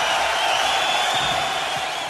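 Theatre audience applauding and cheering at the end of a stand-up routine, with a few whistles.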